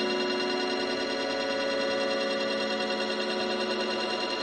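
Live-coded electronic music: a sustained drone of many steady tones held together, with no beat and little bass.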